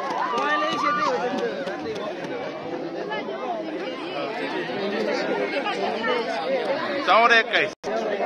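Large crowd of spectators chattering, many voices overlapping at once. A burst of louder voices and laughter rises about seven seconds in, and the sound cuts out for an instant just after.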